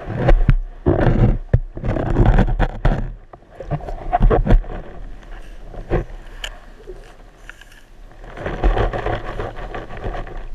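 A diver's exhaled air bubbling out of a hookah regulator underwater, in two long rushing bursts several seconds apart. Between them come fainter scraping and clicking as a plastic sand scoop of sand and shells is sifted.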